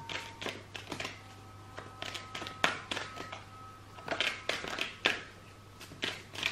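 A deck of tarot cards being shuffled by hand: an irregular run of soft papery clicks and flicks as the cards slide and tap together, busiest about four to five seconds in.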